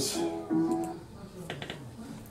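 A 1930s country blues record with guitar, playing through a small speaker, dies away within about the first second as it is switched off. A few faint clicks follow about a second and a half in.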